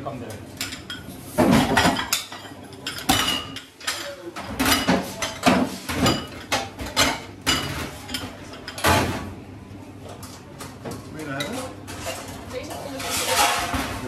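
Stainless-steel serving trays, metal spoons and china plates and bowls knocking and clinking on a steel counter as food is plated in a commercial kitchen: irregular sharp knocks, some with a short metallic ring.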